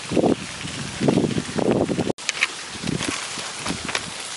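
Rustling and handling noise from a handheld camera, in uneven bursts. It breaks off in a sudden dropout about two seconds in, then goes on as scattered light clicks and knocks.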